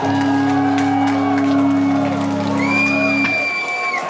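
Live ska-punk band holding one long final chord that cuts off about three seconds in, with the crowd whooping and shouting over it. A high steady tone comes in near the end.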